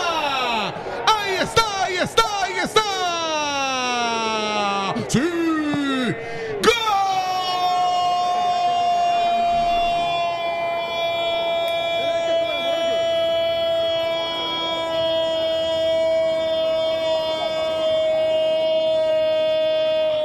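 Football commentator's drawn-out goal cry: a few shouts that fall in pitch, then one long note held for about fourteen seconds, sinking slightly, that swings upward just as it ends.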